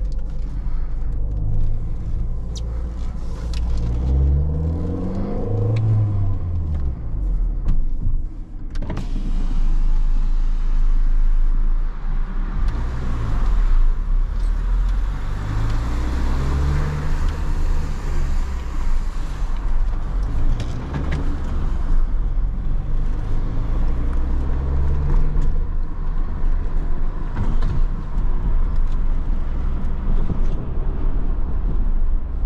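Mini One R50's 1.6-litre four-cylinder petrol engine heard from inside the cabin while pulling away at low speed: the revs rise and fall several times as it is shifted through the gears, over a steady low rumble.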